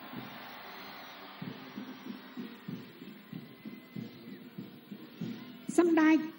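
Muffled low drumbeats, about three a second, over a steady background hum and crowd haze: a parade bass drum keeping the marching beat.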